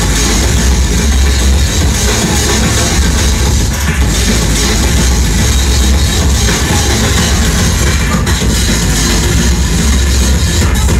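Loud electronic dance music played by a DJ through a club sound system, with a heavy, steady bass throughout.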